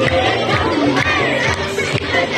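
A Nepali dance song with a steady beat of about two strikes a second, played loud, while a crowd of children shouts and cheers over it.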